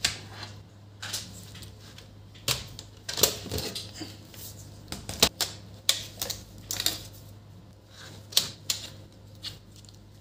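Irregular plastic clicks and knocks as an HP EliteBook 8460 laptop is handled: the charger plug pulled out, the laptop turned over on a wooden table, and its battery and bottom cover unlatched and lifted off.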